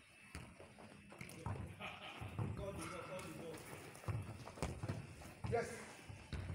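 Faint football training on grass: distant players' voices with soft thuds from running feet and a ball being kicked, and a coach calling "yes" near the end.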